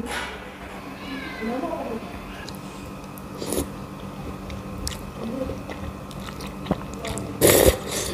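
A person slurping and chewing a mouthful of noodles in broth, with short noisy slurps and a louder slurp near the end.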